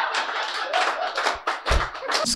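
Audience clapping: a scattered, irregular run of hand claps.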